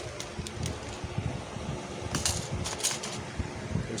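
Hands handling a plastic parcel bag and a small metal cutter, giving scattered short clicks and rustles, with a denser cluster about two seconds in.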